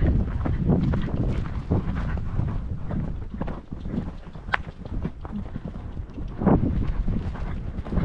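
Hoofbeats of a ridden grey horse on grass turf as it moves off across a field, an irregular run of dull knocks, with wind rumbling on the microphone.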